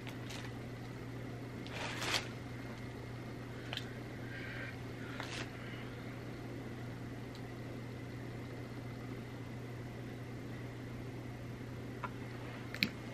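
Steady low room hum with a faint thin high whine, broken by a few soft clicks and rustles of a plastic eyeliner pencil being handled, about two, four and five seconds in.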